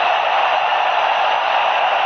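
Steady crowd noise in a football stadium, an even din with no single voice or horn standing out.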